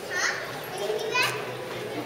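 Children's voices calling out: two short, high-pitched shouts, the first just after the start and the second about a second in, over the steady murmur of other visitors.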